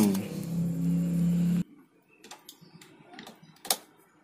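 A steady low hum that cuts off abruptly about a second and a half in. Then a few light metallic clicks, the loudest near the end, as steel locking pliers are handled and clamped onto the end of a 2-inch submersible pump's stainless casing.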